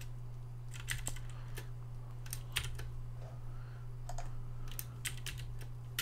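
Computer keyboard keys clicking in a few short groups of keystrokes, over a steady low electrical hum.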